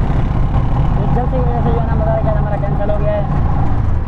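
Auto-rickshaw engine running steadily as it drives through traffic, heard from inside the rickshaw as a loud, low drone, with a voice talking over it.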